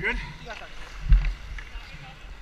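Hockey skating heard through a worn action camera: low rumble of wind and movement on the microphone, with a heavy dull thump about a second in.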